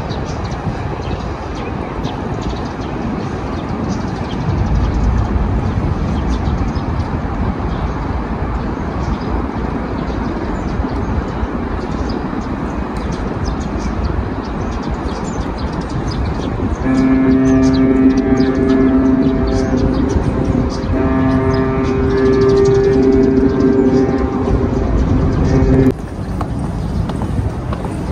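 Outdoor waterfront ambience with wind rumbling on the microphone. About two-thirds of the way in, a series of held, pitched tones starts up, each lasting one to two seconds with short breaks between them, and runs to near the end, louder than the background.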